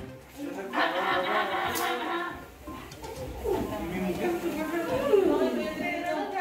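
Indistinct voices talking in bursts, with a lull about two and a half seconds in and some falling-pitch sounds after it.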